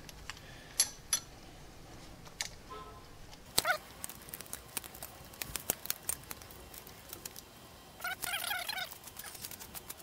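Small metal clicks and taps of a hex key working a set screw into a shaft coupler, the screw being tightened to hold the coupler on its shaft. A short squeak comes about three and a half seconds in, and a longer squeaky stretch near eight seconds.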